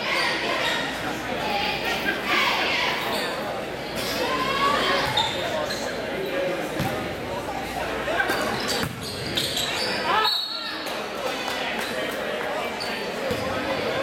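Basketball dribbled on a hardwood gym floor, the bounces heard over the chatter of the crowd in a gymnasium.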